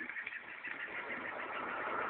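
Steady faint hiss of background noise with no distinct event, growing slightly louder over the two seconds.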